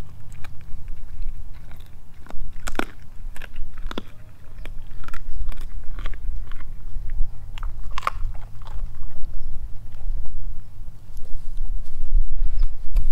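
A Doberman chewing and crunching raw food, with irregular sharp crunches and wet clicks, over a steady low rumble.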